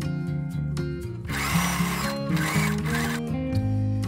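Sewing machine running in two short runs of about a second each, starting about a second in with a brief break between them, as it stitches the top seam of the lining pieces. Acoustic guitar music plays throughout.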